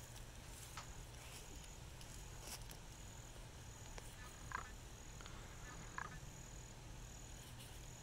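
Faint outdoor ambience: a high-pitched insect chirp repeating about every half second over a low steady hum, with a few faint short clicks.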